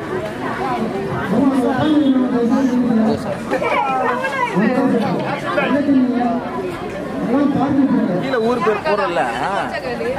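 Chatter: several voices talking and calling out over one another, with no single speaker standing out.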